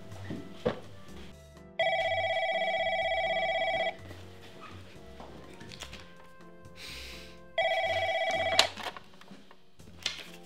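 Desk landline telephone ringing with an electronic warbling trill: one ring of about two seconds, then a second, shorter ring about four seconds later that is cut off. A quiet music bed runs underneath.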